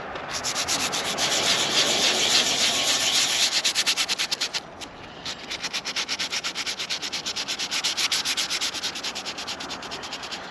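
Hand sanding a gel coat repair on a fiberglass boat: fast back-and-forth scraping strokes, about six a second, with a brief pause about halfway through.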